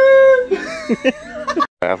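A man's voice sent through a length of flexible electrical conduit held to his mouth: a loud held note for about half a second, then shorter wavering vocal sounds. The sound cuts off abruptly near the end.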